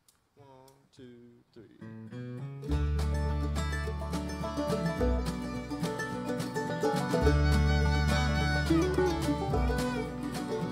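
Live acoustic bluegrass-country band: a few quiet notes, then about three seconds in the full instrumental intro comes in, with acoustic guitar, upright bass walking from note to note, and light drums.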